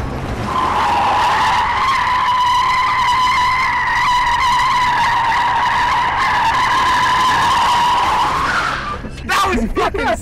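Car tyres squealing on asphalt in one long, steady screech as a Chevrolet Camaro spins in tight circles. The screech stops a little before the end, and short sweeping sounds follow.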